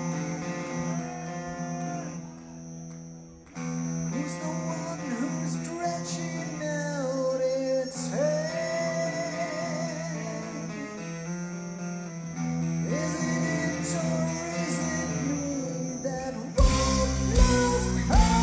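Live rock band: electric guitar playing with a singer's voice held over it, then drums and bass come in heavily about a second and a half before the end.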